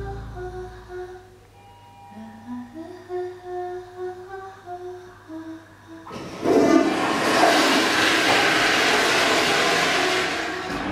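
A person humming a slow tune, one held note after another. About six seconds in a toilet flushes, a sudden loud rush of water that drowns out the humming.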